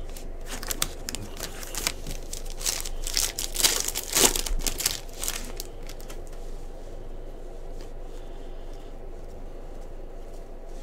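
Thin plastic crinkling and rustling as trading cards are handled, in a dense run of crackles that is loudest about four seconds in and dies down after about five seconds.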